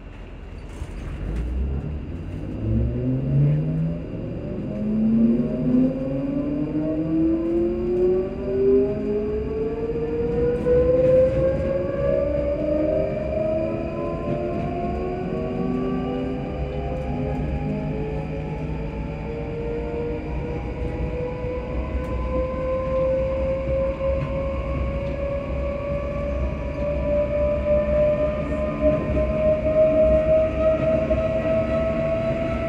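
Electric train's traction motors whining as it pulls away and gathers speed, several tones rising steadily in pitch from low to high, over the rumble of the wheels on the track.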